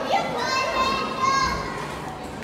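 A child's high-pitched voice calling out in one long, drawn-out cry without clear words, over the general noise of a busy indoor hall.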